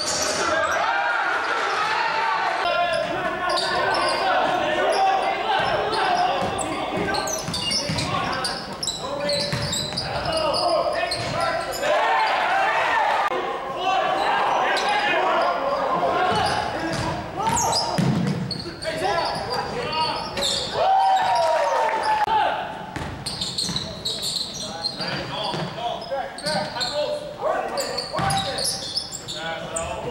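Live sound of a basketball game in a gym: players and spectators shouting and talking, with a basketball bouncing on the hardwood court, echoing in the hall.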